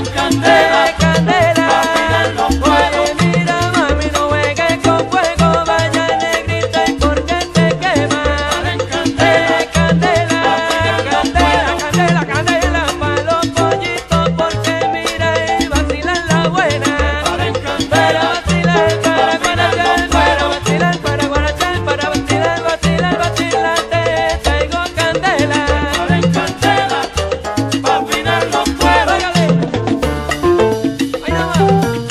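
Salsa music in an instrumental passage: a steady repeating bass pattern under percussion and melodic instrumental lines, with no vocals.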